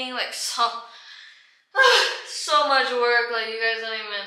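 A woman's voice with no clear words: a short vocal sound, a sharp breath about two seconds in, then long drawn-out vocalising.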